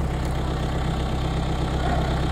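An engine idling steadily, a low even hum with no change in speed.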